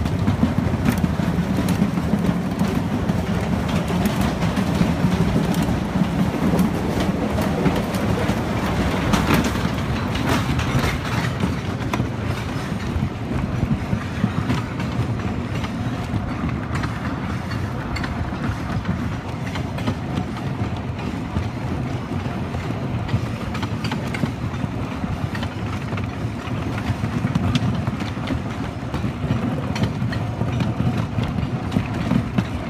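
Wooden roller coaster train rolling through a tunnel on wooden track, then, partway through, climbing the chain lift hill: a steady rumble of wheels and chain with rapid, continuous clicking, typical of the lift chain and the anti-rollback ratchets.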